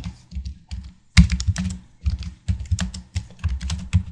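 Computer keyboard typing: a quick run of keystrokes about a second in, a short pause, then a longer flurry of keystrokes in the second half.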